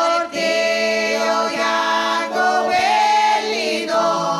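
A group of voices singing a traditional Salentine folk song together in harmony, with long held notes and a short breath break about a third of a second in.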